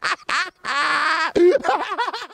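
A rapper's shouted, squawky vocals from a rap track: a few short yells, then one longer held call about half a second in, followed by more quick shouts.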